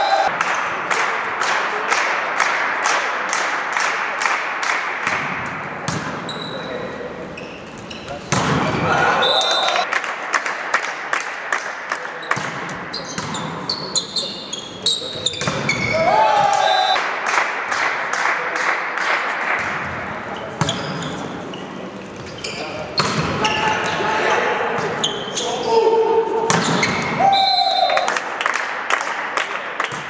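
Live volleyball in a reverberant sports hall: spectators clapping in a steady rhythm of about three claps a second over general crowd noise and shouts. Short whistle blasts and calls come every several seconds as rallies start and end, with the thuds of the ball.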